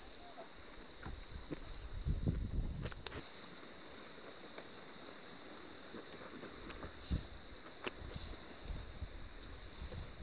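Quiet river ambience: a steady hiss of flowing water, with low rumbles of wind gusting on the microphone and a few faint clicks.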